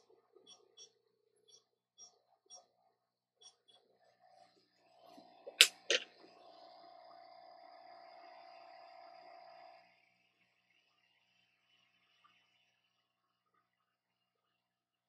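Light ticking, then two sharp clicks followed by a small motor or fan whirring steadily for about four seconds before it stops, on a microsoldering bench.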